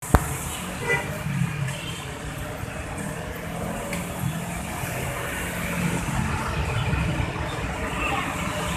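Steady city road traffic: motor scooters, motorcycles and other vehicles passing at close range, with a sharp click just at the start.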